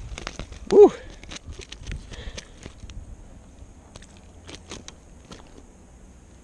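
A short vocal grunt about a second in, then scattered light knocks and taps as a rainbow trout is landed in a landing net beside a kayak.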